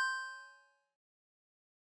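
An electronic chime sound effect, struck twice just before and ringing out with clear bell-like tones that fade away within about the first half second, followed by silence. It marks a step in the on-screen procedure being ticked off as complete.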